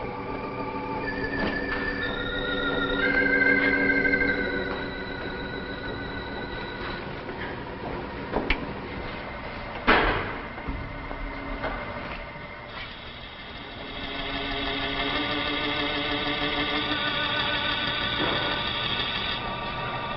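Organ music playing held chords that swell again in the second half. A sharp bang about halfway through is the loudest moment, with a smaller knock just before it.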